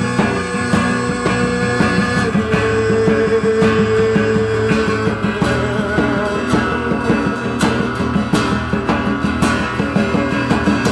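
Two steel-string acoustic guitars strummed together in a fast, driving rhythm, backed by a djembe, in a live instrumental passage.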